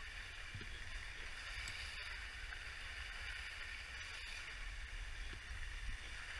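Skis sliding over groomed corduroy snow, a steady hiss, with wind rumbling on the microphone.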